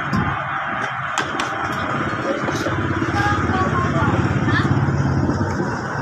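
Small motorcycle engine running steadily, its firing pulses even, a little louder for a few seconds in the middle, during a carburettor tune-up.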